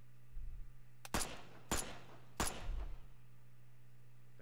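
Three pistol shots, spaced a little over half a second apart, each a sharp crack with a short ringing tail.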